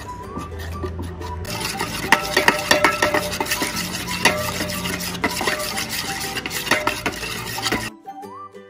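Metal spoon stirring a thin mochiko rice-flour and water batter in a stainless steel bowl, clinking and scraping against the bowl's sides over and over. The clinks get busier about a second and a half in.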